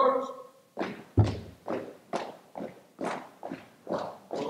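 A drill command called out at the start, then a color guard's marching steps: sharp, even footfalls about two a second, one a heavier thud just over a second in.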